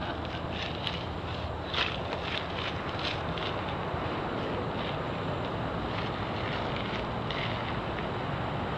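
Steady wind rush on the microphone, with scattered crisp crackles in the first few seconds.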